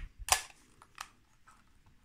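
Leica II cloth focal-plane shutter firing: a loud clunk about a third of a second in, not a schnick, with a smaller click about a second later. The owner hears it now as the normal Leica shutter sound, not dry, and puts this down to lubricant spread over dry parts of the mechanism by people working it, which he calls only a theory.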